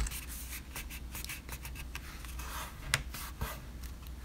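Fingers pressing and smoothing a freshly glued, folded cardstock envelope: soft irregular paper rubbing and scratching, with one sharper tick about three seconds in.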